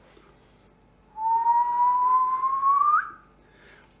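A man whistling one long note that begins about a second in, rises slowly in pitch and ends with a quick upward flick: an admiring whistle.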